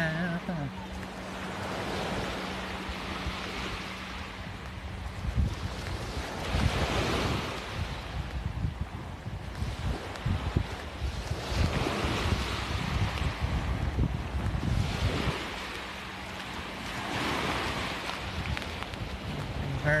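Small waves breaking and washing up the sand, the hiss swelling and fading about every five seconds, with wind rumbling on the microphone.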